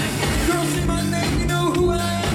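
Live funk band playing an instrumental vamp: a bass line repeating about once a second under a drum kit beat, with pitched riffs above.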